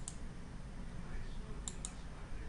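Computer mouse button clicks: one click at the start, then two quick clicks close together near the end, over a faint low background hum.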